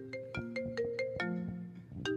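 An iPhone ringtone playing: a quick melodic run of marimba-like struck notes. It is a fake ringtone played back as a prank, not an incoming call.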